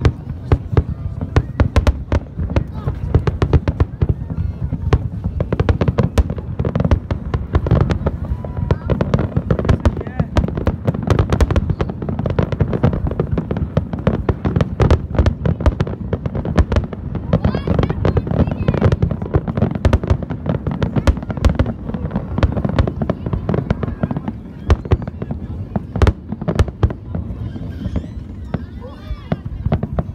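Fireworks display: aerial shells bursting in a rapid, unbroken barrage of bangs and crackles, several a second, over a continuous low rumble.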